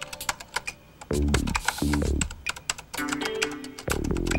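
Rapid keyboard-like clicking as a message is typed out letter by letter on a computer screen, over background music with low notes that slide downward.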